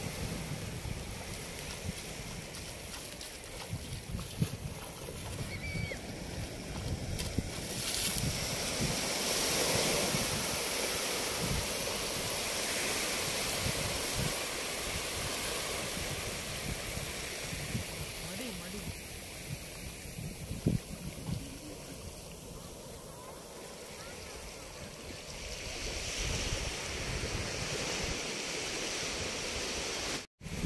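Small waves breaking and washing in over a shallow beach, with wind buffeting the microphone in low, uneven gusts.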